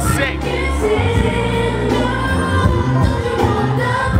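Loud club music with a sung vocal over a heavy bass line, played over a nightclub sound system.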